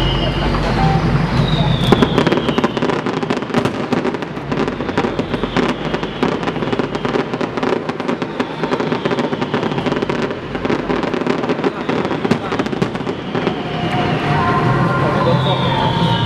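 Fireworks show: aerial shells and crackling effects going off in rapid succession, a dense run of sharp bangs and cracks that is loudest about two seconds in.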